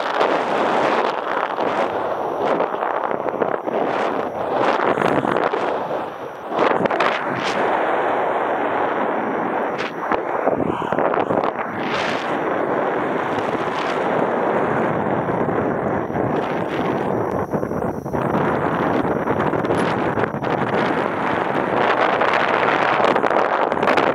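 Wind rushing over the camera's microphone as a paraglider flies: a loud, steady buffeting rush that swells and eases, dropping briefly about six seconds in before gusting back.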